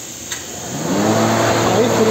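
Cooling-fan motor on a vacuum-forming machine switching on: a soft click, then the motor spins up and settles into a steady hum about a second in, cooling the freshly formed plastic spoiler so it hardens.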